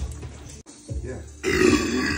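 A man belches loudly after swigging beer from a bottle. The burp starts about one and a half seconds in, is long, and slides down in pitch.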